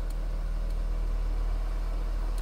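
Audi A8's engine idling, heard from inside the cabin as a steady low hum.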